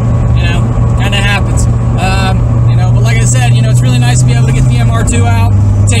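Toyota MR2's engine droning steadily, heard from inside the cabin while driving. Its pitch climbs slightly, then steps down about five seconds in.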